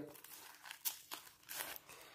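Panini sticker packet wrapper crinkling as it is torn open and the stickers are slid out: a few faint, scattered crackles.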